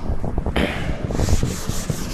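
A cloth duster rubbed against a chalkboard, wiping chalk off in scratchy back-and-forth strokes that turn quick and regular about a second in.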